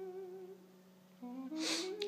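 A man humming a held 'mmm' with a slight waver, which fades out about half a second in. After a short lull he hums again, the pitch rising in a few small steps, before he starts to speak.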